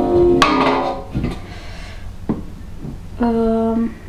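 A woman's voice holding long, even notes, as if humming or drawing out a sound, once at the start and again near the end, with a couple of light clicks of a spatula against a glass jar in between.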